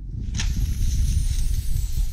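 Wind buffeting an outdoor camera microphone: a dense low rumble with a hiss above it, cutting in suddenly as the clip's live audio begins.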